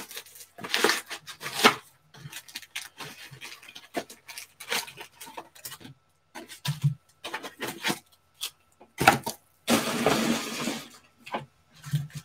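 Panini Select football card packs and their box being handled: a run of sharp crinkles, crackles and rustles of foil wrappers and cardboard. A longer rasping rustle comes near the end.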